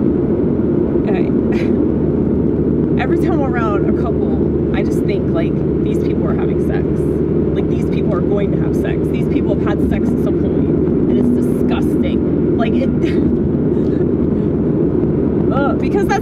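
Steady road and engine rumble heard from inside a moving car's cabin, with brief indistinct voice sounds and small clicks now and then over it.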